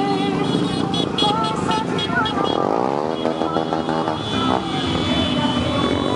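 Many small motorcycles running past in a slow procession, one engine revving up in pitch about halfway through, over music and voices.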